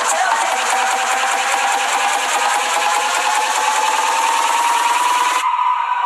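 Build-up section of an electronic dance track: a fast, dense drum roll under a synth tone that rises slowly in pitch, with the bass filtered out. About five and a half seconds in, the drums cut out, leaving the rising tone on its own.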